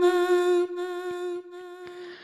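A girl's unaccompanied voice holding the last sung note of a line of an Urdu nazm at a steady pitch, fading away over about two seconds.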